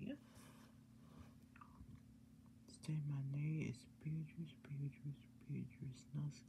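Indistinct, low speech in short broken pieces starting about halfway through, over a faint steady hum.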